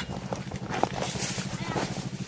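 A small engine running steadily in the background, a low, even pulsing hum, with a faint click a little under a second in.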